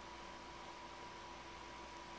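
Quiet room tone: a faint steady hiss with a faint hum underneath.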